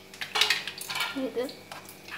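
A metal utensil clinking and scraping against a steel saucepan as raw eggs are stirred into a banana mixture.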